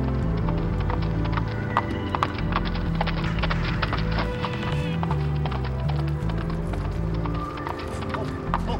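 A ridden horse's hoofbeats over background music, whose sustained low notes change every second or so.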